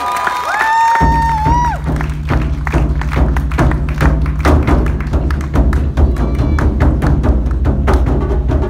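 Live Japanese taiko drumming. Drums are struck in a fast, dense rhythm that comes in about a second in, over a deep, steady low rumble. A long pitched call with sliding ends sounds over the first second and a half.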